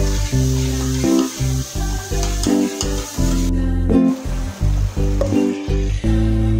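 Onion and spice masala sizzling in a steel pot while a metal spatula stirs it, with a few sharp scrapes of the spatula on the pot. The sizzling drops out for a moment a little past the middle. Background music plays throughout.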